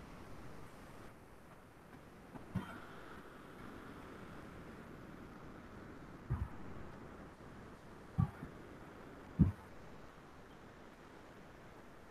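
Steady faint hiss with four short, low, dull thumps spread through it, the last the loudest.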